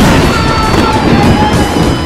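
Loud electric zap sound effect for a lightning bolt, lasting nearly two seconds, over heavy-metal electric guitar music.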